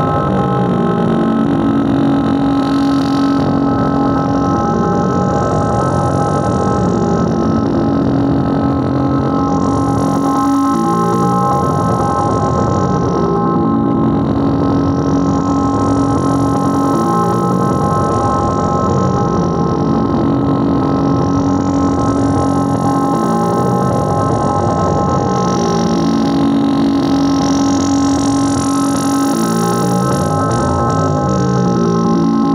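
Tribal tekno played live on a Korg Electribe R mkII drum machine: a dense, fast repeating percussion pattern under steady high held tones and a low drone that drops in and out. A high hiss sweeps up and down about every six seconds.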